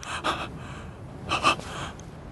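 Two harsh, breathy gasps from a person, about a second apart, over a faint steady hiss.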